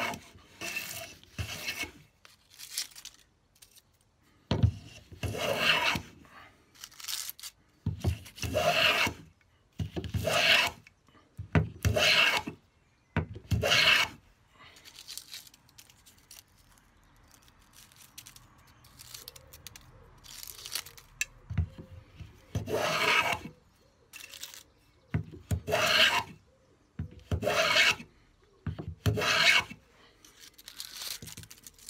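Record 0311 shoulder plane with a freshly sharpened iron taking shavings along a rebate in a wooden board. It makes repeated short cutting strokes, with a pause of several seconds in the middle before the strokes resume.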